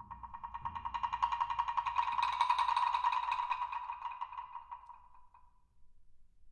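Two low wood blocks struck with hard yarn mallets in fast, even, unaccented runs of strokes, swelling to a loud peak about halfway through and then fading away. A soft low thud from a bass drum's rim comes just under a second in.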